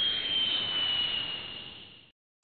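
Airbus A320-family jet engines heard from inside the cabin while taxiing after landing: a steady rush with a high whine that drifts slowly lower, fading out near the end.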